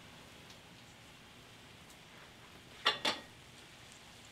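Faint steady sizzle of food in the steel pan of a propane disc cooker, with two quick clinks close together about three seconds in.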